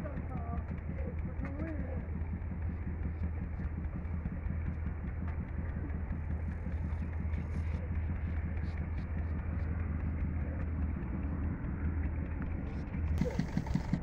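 Steady low drone of an idling engine, with a short burst of rustling noise near the end.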